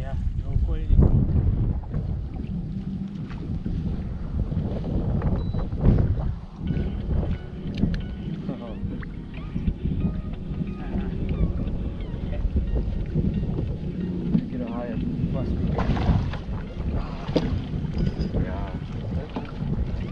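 Wind buffeting the microphone on an open bass boat, with water lapping against the hull. A few sharp clicks come through around six seconds in and again near the end, along with faint voices.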